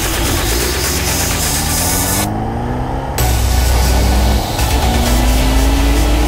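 Motorcycle engine pulling away and accelerating, its pitch climbing and dropping back as it goes up through the gears. About three seconds in, wind noise on the microphone rises sharply and stays loud. Music plays underneath.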